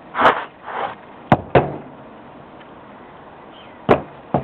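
Two short rushing noises, then two sharp knocks about a quarter of a second apart, and one more knock near the end.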